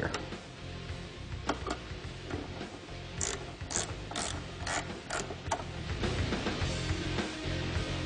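Small ratchet wrench clicking in short strokes, about six sharp clicks at roughly two a second, as the bolt holding the stock fork reflector is backed out. Quiet background music plays underneath.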